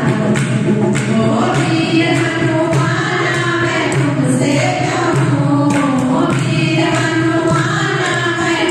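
A group of women singing a Hindu devotional bhajan in unison into microphones, over a steady beat of dholak drum and hand claps, about two strokes a second.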